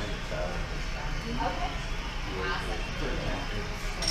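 Restaurant room noise: indistinct talk from other diners over a steady low hum.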